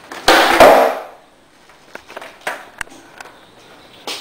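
Skateboard on a concrete floor: two sharp knocks close together with a rough scrape of the board, as in a flip-trick attempt, then a few faint light taps.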